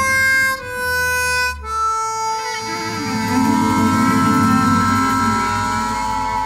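Harmonica playing a slow melody: a few short held notes in the first two seconds, then one long sustained note over a low accompaniment.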